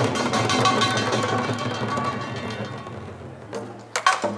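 Korean pungmul (samul nori) percussion ensemble of janggu hourglass drums, buk barrel drums and small gongs playing a fast, dense roll that gradually fades away, then one sharp stroke right at the end.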